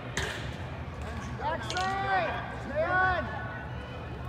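A soccer ball kicked once, a sharp thud that rings on in the echoing indoor hall, then two long shouted calls from players, about a second and a half and three seconds in.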